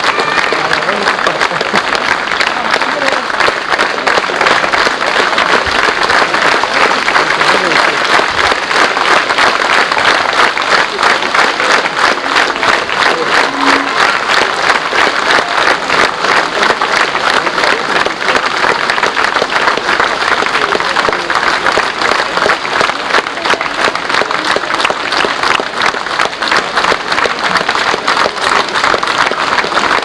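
An audience applauding: dense, even clapping that keeps up without a break.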